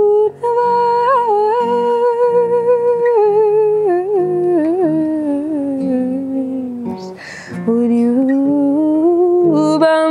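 A woman's wordless singing over her acoustic guitar: long held notes that waver and slowly sink, a short breath about seven seconds in, then the line climbs again.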